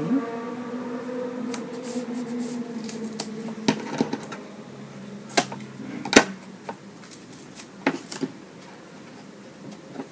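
Scattered clicks and taps of small scissors snipping double-sided mounting tape and of strips being pressed onto the back of a plastic photo frame, the sharpest click about six seconds in. A steady low hum runs under the first few seconds.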